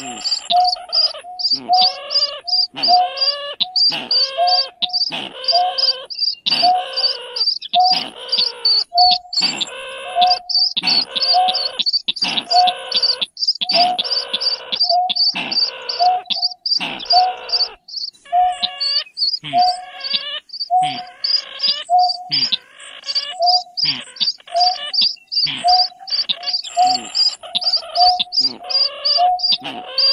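Recorded calls of greater painted-snipe and rail mixed together as a hunting lure, repeating without a break. Short hooting notes, a fast run of high notes and calls that fall in pitch come round about once a second.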